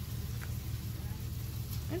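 A steady low hum, as of a motor or electrical appliance running, with a faint click about halfway through.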